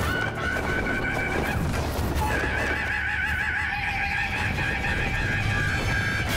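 Stage music with a long, high held note that wavers slightly, joined by a lower held note about two seconds in, over scattered drum and percussion hits.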